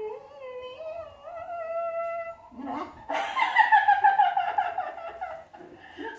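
A person's voice making a long sung note that slowly rises in pitch, then a louder warbling cry with a rapid quaver that slowly falls in pitch and stops shortly before the end.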